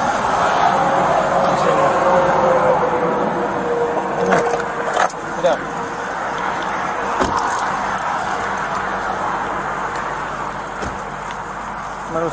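Highway traffic going past on the road shoulder, one vehicle's pitch falling slowly as it passes, fading toward the end. A few sharp metallic clicks and jingles are heard about four to seven seconds in.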